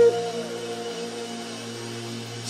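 Soft, steady sustained keyboard chord holding on its own, as a held sung note dies away right at the start.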